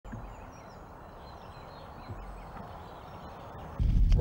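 Quiet outdoor ambience: a low rumble of wind with a few faint, high bird calls. Just before the end it cuts to the much louder noise of a car interior.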